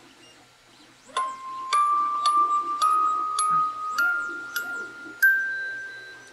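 Tomy Bring Along a Song wind-up music box playing a 3D-printed test tape: its comb is plucked one note at a time, about two notes a second, in an ascending scale starting about a second in. A faint whir of the clockwork runs underneath.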